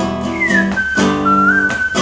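Acoustic guitar strummed in chords, with a whistled melody over it. The whistle comes in about half a second in, slides down and then holds a tune.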